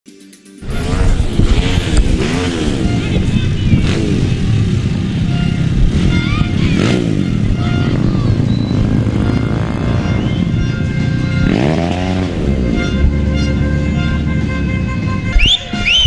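Motorcycle and car engines passing along a street, revving up and down again and again, with music mixed in.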